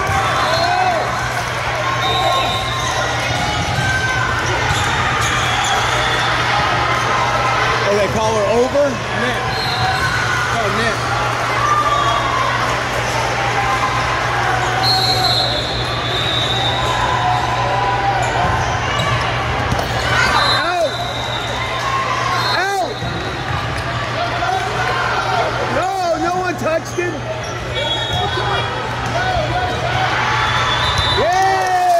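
Indoor volleyball gym during play: athletic shoes squeaking on the sport-court floor and volleyballs being struck and bouncing, with a few sharp ball hits in the second half. Voices chatter in the hall over a steady low hum.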